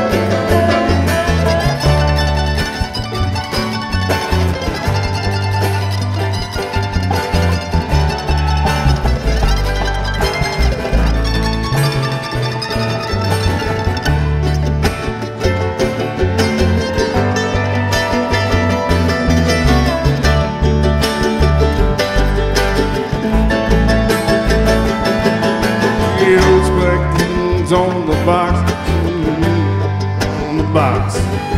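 Bluegrass band playing live, without vocals: banjo, mandolin and guitars picking over a steady upright-bass line in an instrumental break.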